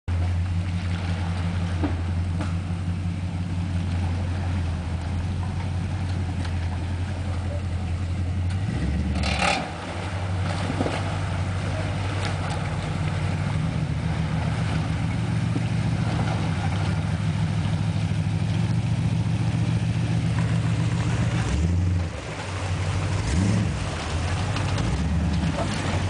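Chevy K10 pickup's engine running steadily under load as the truck drives through a river, its note dropping briefly about nine seconds in and again near the end, followed by a short rev.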